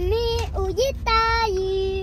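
A young boy singing a short phrase that ends on two long held notes, the second lower, over the low rumble of a moving car's cabin.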